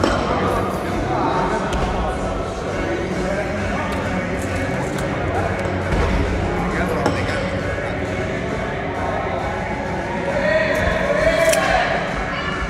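Background sound of a busy gym hall: indistinct voices and chatter running on steadily, with a dull thud about six seconds in.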